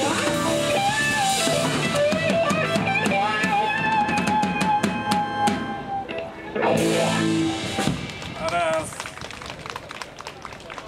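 Live blues band finishing a song: electric guitar holds bending notes over a fast drum fill of snare and cymbal hits. After a brief break, the full band strikes a final chord about seven seconds in, adds a shorter closing hit, and the sound drops away.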